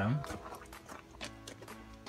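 Faint footsteps on gravel, a scatter of short crunches, with a low steady hum in the second half.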